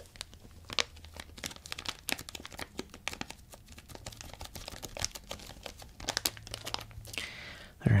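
Plastic Swedish Fish candy bag being handled and squeezed by fingers close to the microphone, giving a run of irregular, crisp crinkles.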